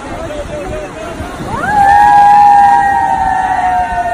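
Two people cheering with a long, high "woooo" that rises into pitch about a second and a half in and is held for about two seconds, sagging slightly at the end.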